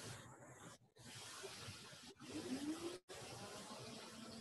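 Steady hiss of background noise from an open microphone on a video call, cutting out abruptly twice. A faint rising tone sounds in the second half.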